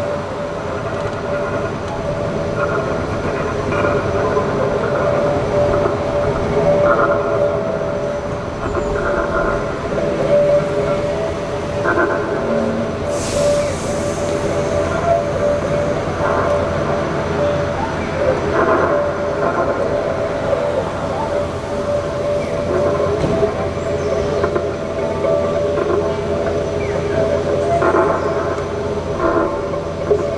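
Free-improvised music for violin, cello and acoustic guitars: steady droning tones held throughout, with scattered plucked and struck notes. A brief hiss comes about halfway through.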